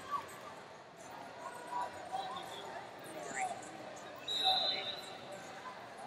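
Background noise of a large indoor wrestling arena: scattered distant voices, a few short squeaks, and a brief high steady tone about four and a half seconds in.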